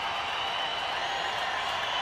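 Steady murmur of a baseball stadium crowd waiting on a two-strike pitch. It ends in a single sharp pop as the pitch smacks into the catcher's mitt on a swinging third strike.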